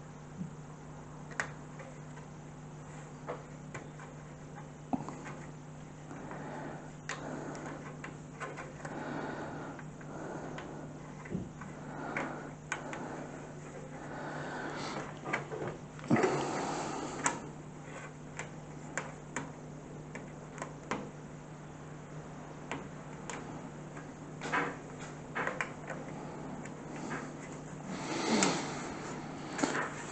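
Handling noise from working on a Cooler Master PC case: scattered light clicks, knocks and rubbing as rubber grommets are pushed into the panel and the case is moved about, busiest about halfway through and again near the end. A steady low hum runs underneath.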